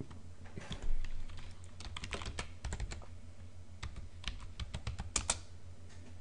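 Computer keyboard typing: a quick run of key presses as a password is entered at a login prompt, with a louder pair of strokes near the end.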